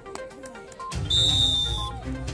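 Background music, with a single whistle blast from a referee's whistle about a second in, lasting just under a second and louder than the music.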